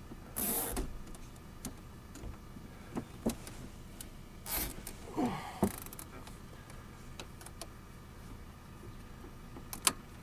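Plastic cable tie being pulled tight on wiring: short zipping rasps about half a second in and again around four and a half seconds, with scattered clicks and handling of the wires and plug.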